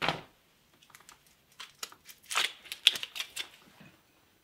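Handling noises: a few short bursts of rustling and crinkling, one right at the start and a louder cluster between about two and three and a half seconds in.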